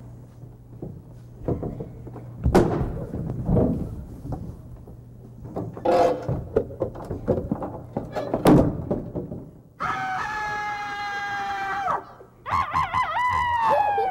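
Several loud thuds and knocks from a staged offstage struggle, then two long high vocal cries, the second falling in pitch at the end: an actor's imitation of a rooster's crow.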